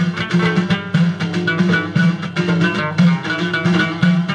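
Live Middle Atlas Amazigh folk music: a lute plucked in quick running notes over frame drums beating a steady, driving rhythm.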